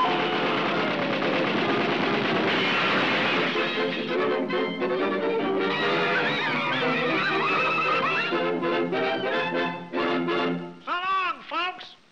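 Early-1930s cartoon soundtrack: orchestra music under a busy clamour of cartoon voices. The music settles into held chords, then closes with a few quick rising-and-falling notes and stops.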